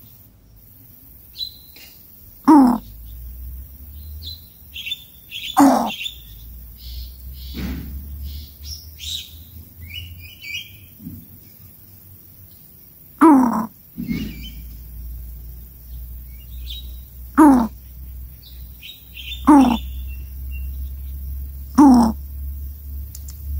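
Coucal giving a short, deep call about seven times at uneven gaps of two to four seconds, with fainter high chirps between the calls.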